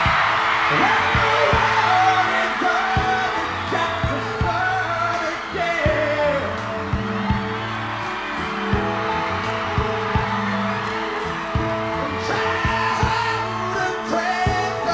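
Live rock band playing a slow ballad: sustained keyboard chords and bass under a steady drum beat, with a wavering lead melody on top.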